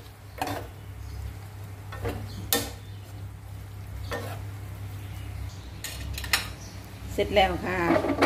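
A metal spoon and a wooden spatula tossing minced pork larb in a nonstick wok: soft scrapes with a handful of sharp clinks against the pan, over a steady low hum.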